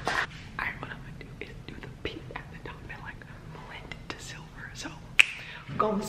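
Hushed, faint voices whispering away from the microphone, with small scattered knocks and one sharp click about five seconds in.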